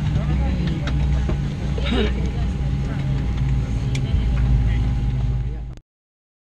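Boeing 737-700 cabin sound while parked at the gate: a steady low hum with a faint steady whine above it and indistinct passenger voices. It cuts off abruptly near the end.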